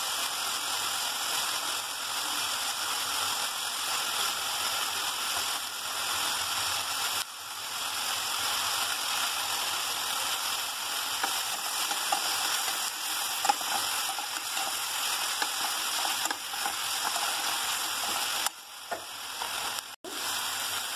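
Green beans, onions and tomatoes sizzling steadily in hot oil in a cooking pot. The sizzle dips briefly twice.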